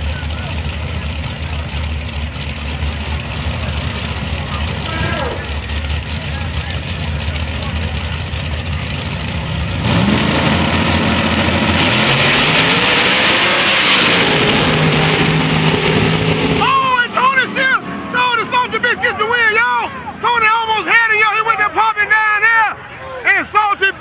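Two drag-racing cars' engines idling at the starting line, then revving hard as they launch about ten seconds in, the engine pitch climbing for several seconds with a burst of loud noise. From about seventeen seconds on, the engines fade under excited shouting voices.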